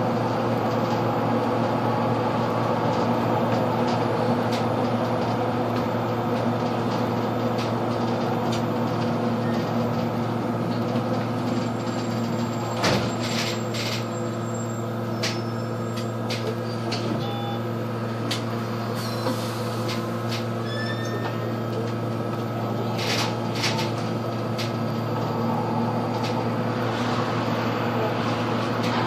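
Interior of a Solaris Urbino 18 III Hybrid articulated bus driving at steady speed: a constant hum from the drivetrain over road noise. A few brief clicks and rattles come from the cabin, the sharpest about halfway through.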